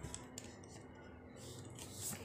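Faint handling noise: a few light clicks and soft rustles, as a sheet of A4 paper is handled and set down on the floor, over a faint low hum.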